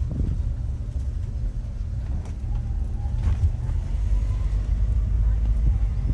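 Low, steady rumble of a car driving slowly, heard from inside its cabin.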